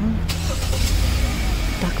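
Car running and road noise heard from inside the moving car, a steady low rumble.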